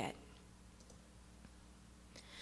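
Near silence in a pause of speech: quiet room tone with a faint steady low hum and a few faint clicks.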